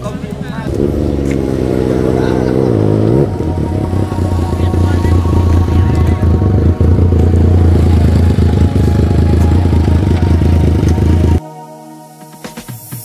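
Large motorcycle engines close by: an engine revs up and drops back, then a loud, deep, steady exhaust rumble runs for several seconds and stops suddenly near the end.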